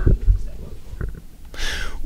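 Low bumps and rumble picked up by a table microphone being handled, a short click about a second in, then a sharp inhale just before speech resumes.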